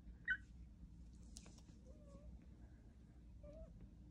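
A newborn French bulldog puppy gives one short, high squeak about a third of a second in, then two faint, lower whimpers later on.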